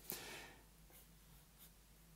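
Near silence: room tone, with a faint brief hiss-like rustle in the first half second.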